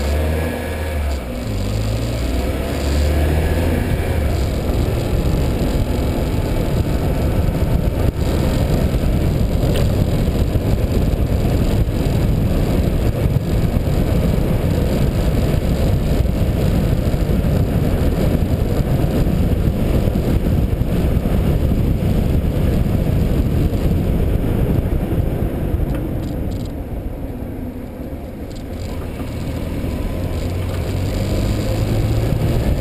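Steady low rumble of wind and road noise on the microphone of a camera moving along a road, easing briefly near the end.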